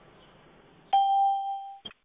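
A single electronic notification chime from the video-call software: a clean steady ding that starts suddenly about a second in and fades away over nearly a second, followed by a short click.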